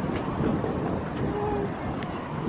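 Wind on the microphone, a steady low rumble.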